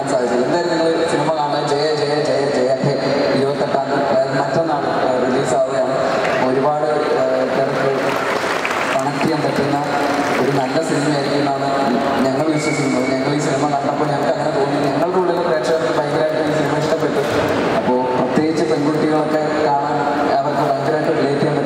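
A man speaking continuously into a handheld microphone.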